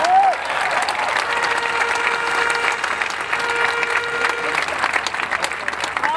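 Crowd applauding, a steady even clapping throughout, with a faint held tone sounding for a few seconds in the middle.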